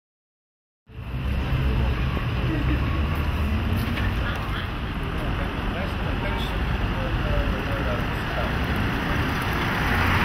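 Street ambience with steady road traffic noise and a low rumble, starting suddenly about a second in after silence.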